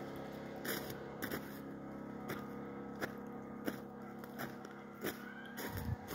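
Footsteps crunching on packed snow, about one step every two-thirds of a second, over a steady low mechanical hum.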